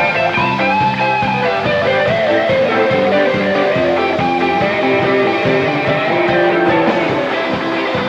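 Live rock band playing, with a guitar line over a steady drum beat.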